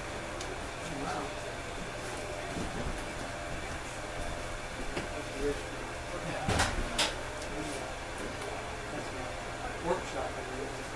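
Electric potter's wheel running at slow speed with a steady low hum. Two sharp knocks come a little past the middle, about half a second apart.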